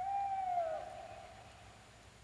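A single long, whistle-like note held at one pitch, with a brief bend as it begins, fading away over about two seconds.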